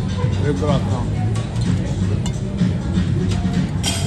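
Background music playing steadily, with a few light clinks of dishes or cutlery, and a brief word of speech near the start.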